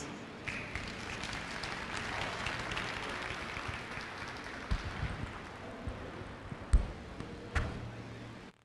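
Audience applauding, starting about half a second in and slowly dying down, with a few low thumps over it in the second half, the loudest about three-quarters of the way through.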